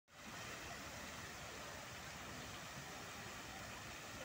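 Steady rushing hiss of a fountain's water spray, with city street traffic mixed in.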